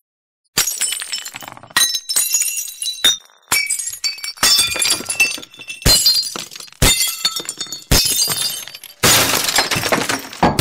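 Repeated crashes of glass shattering, about one a second, each followed by a tinkling ring-out. They start after a brief silence, and the last one near the end is denser and louder.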